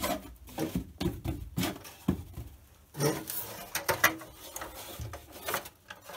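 A flexible silicone mould and its rigid fibreglass jacket being handled and fitted together: irregular knocks and clicks of the hard shell against the bench and mould, with rubbing of the silicone between them.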